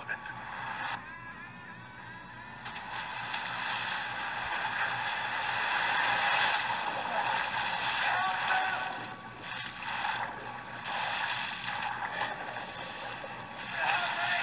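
Horror film trailer sound design played back: a rushing, noisy swell that builds over the first few seconds, then ebbs and surges, with a few faint wavering tones in it.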